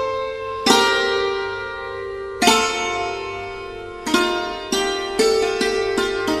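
Instrumental end music of plucked-string notes, each one struck sharply and left ringing until it fades. The notes come about every one and a half to two seconds, then more closely near the end.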